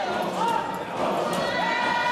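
A Zion church congregation singing or chanting in a hall, with long held high notes that slide down at their ends, over repeated thuds.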